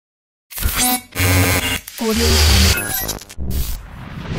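Channel logo intro sound effects: a run of short, loud glitchy hits with deep bass and noisy bursts, cut off abruptly one after another, starting about half a second in.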